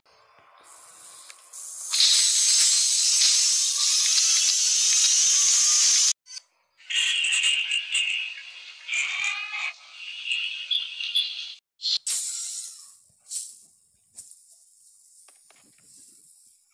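Heavily distorted, effects-processed logo soundtrack: a loud, high-pitched hiss-like noise builds in and holds for about four seconds, then cuts off abruptly. Choppy high-pitched warbling sounds follow, broken by sudden dropouts, and fade to a faint tail near the end.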